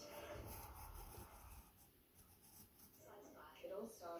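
Faint scratching of a pencil drawing on sketchpad paper, in short strokes, with faint speech in the background near the end.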